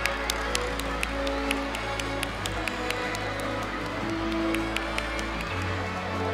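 Background music with held notes and a steady, quick beat.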